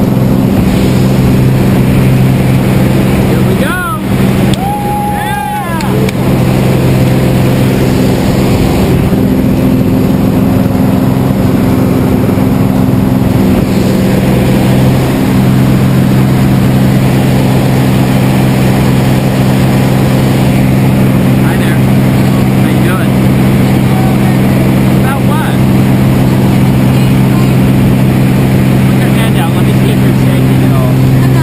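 Light single-engine plane's piston engine and propeller droning steadily at climb power, heard from inside the cabin. The drone dips briefly about four seconds in.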